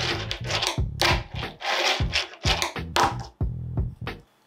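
Fingerboard wheels rolling and scraping over a wooden ramp in a quick series of short strokes, each about half a second long. The strokes stop near the end.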